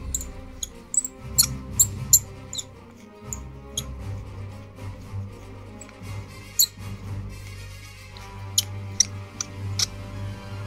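Background music with scattered sharp clicks and ticks from a clear plastic model hull being handled, most of them in the first few seconds and again near the end.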